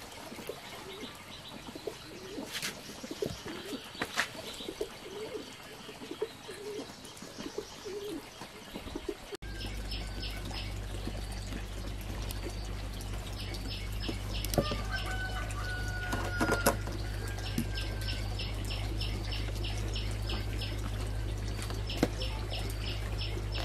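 Birds calling, with low repeated warbling notes in the first half. About halfway through the sound changes suddenly: a steady low hum sets in under rapid, repeated high chirps, with a couple of sharp knocks.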